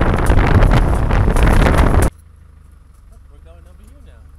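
Wind buffeting the microphone over the rumble and rattling knocks of an open vehicle driving on a dirt track, cut off abruptly about halfway through. A quiet stretch with a faint voice follows.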